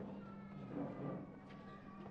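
A long, thin, high-pitched cry held for almost two seconds, sinking slowly in pitch, over a steady low electrical hum.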